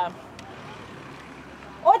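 Faint outdoor background noise with a low rumble during a pause. Near the end, a woman's loud voice through a megaphone begins.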